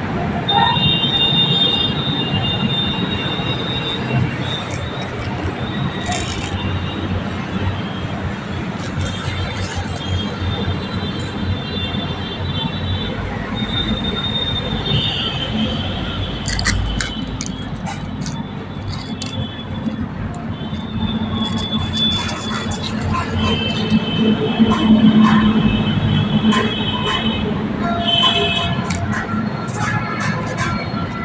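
Small plastic toy helicopters and planes being pushed and rolled on a concrete floor: a steady rumble of the little wheels on the concrete, with repeated high-pitched whines from the toys' wheels and gears that come and go in stretches of a second or two, and scattered clicks of handling.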